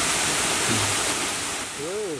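Steady rush of a small stream falling over rocks, with brief fragments of a voice about a second in and near the end.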